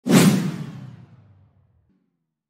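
Intro whoosh sound effect: a sudden swoosh with a deep boom underneath, dying away over about a second and a half.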